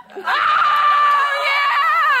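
A person screaming: one long, high-pitched held scream starting a fraction of a second in, its pitch wavering near the end.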